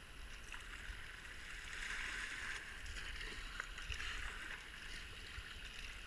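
Rushing water of a river rapid around a kayak, a steady hiss, with a low rumble on the microphone and a few faint ticks.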